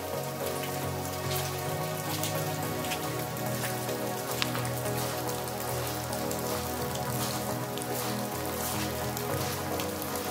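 Steady light rain falling and pattering on the ground and roofs, with scattered drops striking close by and one sharper tick near the middle, under soft background music of sustained tones.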